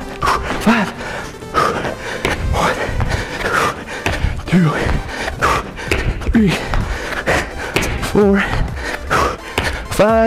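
Repeated thuds of feet landing on a gym floor during tuck jumps, with hard breathing and short grunts from the exertion, over background music.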